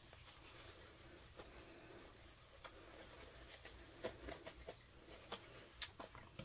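Faint, scattered light clicks and taps from small craft items being handled, over quiet room tone, with the sharpest click just before the end.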